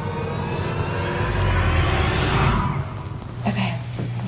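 A rushing whoosh that swells up about a second in and dies away near three seconds, over a low steady hum.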